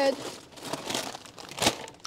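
Plastic chip and snack packets crinkling as they are handled and stacked, with two sharper crackles, one about halfway and one near the end.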